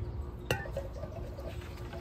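Water poured from a small watering can onto a handful of garden soil, with a single sharp clink about half a second in as the can is handled.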